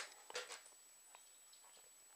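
Near silence: room tone, with a few faint short clicks in the first half second.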